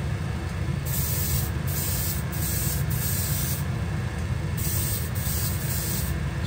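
Airbrush hissing as it sprays a light tack coat of 2K clear, in several passes with brief pauses between them, over the steady hum of the spray booth's exhaust fan.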